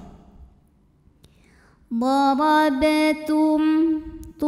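A woman reciting a Quranic Arabic phrase in a steady, chanted voice, starting about two seconds in after a near-silent pause. It is the example word 'dharabtum', read with a small qalqalah sughra bounce on the ba sukun.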